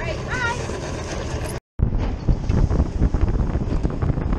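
After a brief cut, wind buffeting the microphone over the rush of a motorboat running at speed across open water, a loud, dense, low rumble.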